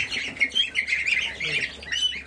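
A brood of goslings and young chicks peeping together: many short, high, overlapping peeps in quick succession.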